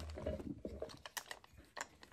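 A few faint, sharp clicks and light knocks from handling a jointed resin swimbait as it is carried over and lowered toward a bucket of water.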